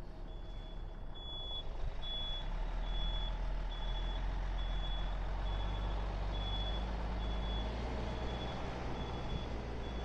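Dump truck's backup alarm beeping at an even pace, about three beeps every two seconds, over its diesel engine running. The beeps fade toward the end.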